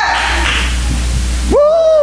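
A steady low hum of the church sound system. About one and a half seconds in, a loud held vocal shout sweeps up in pitch, holds, and then falls away.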